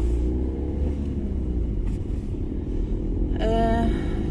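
Car engine and road noise heard from inside the cabin while driving: a steady low rumble.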